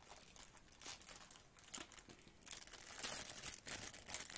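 Faint crinkling and rustling of diamond-painting supplies being handled, with scattered small clicks, busier in the second half.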